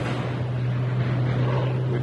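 A steady low hum, like a motor or engine running without change, over a constant background hiss.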